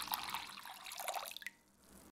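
Last trickle and drips of chicken stock falling into a glass bowl as the pour ends, the splashing fading away about one and a half seconds in.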